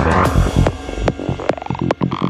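Psychedelic trance music in a breakdown: the regular kick drum gives way to a sustained low, throbbing bass, and a synth tone glides steadily upward in the second half.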